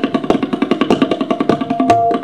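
A tabla pair played in a fast solo passage in teental: a rapid, even run of crisp strokes, a dozen or more a second, with the tuned right-hand drum ringing between them.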